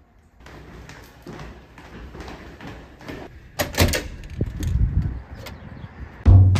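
A few thumps and clicks over a steady low rumble. The loudest thumps come about three and a half seconds in, and smaller clicks follow near the end.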